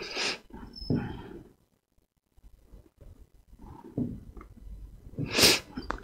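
A man breathing: a few short noisy breaths and sniffs, a near-silent stretch in the middle, and a sharp intake of breath near the end.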